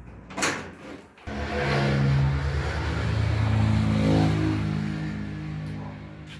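A key turning in a metal door lock with a short click, then a vehicle engine passing by, growing louder and slowly fading over several seconds.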